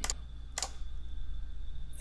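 Two short, sharp computer clicks about half a second apart, over a faint steady electrical hum.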